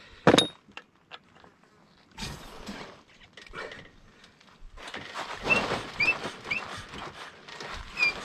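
A sharp metal clink with a brief ring at the hydraulic bottle jack, then scraping and creaking as the jack is released and the Polaris RZR settles down onto its new Walker Evans coilover shocks. A few short high chirps come between about five and six and a half seconds in.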